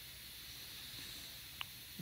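Faint steady hiss of room tone, with one small click about one and a half seconds in.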